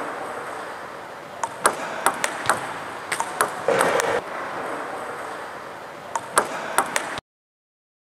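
Celluloid-style table tennis ball ticking sharply off the table and the rubber of a paddle in short quick sequences of serve, flick and bounces, twice over. In between there is a brief noisy rasp. The sound cuts off abruptly a little before the end.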